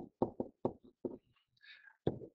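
A stylus tapping and clicking on a writing surface while handwriting a few characters: about eight short, light taps in the first second or so, then a faint scratchy stroke near the end.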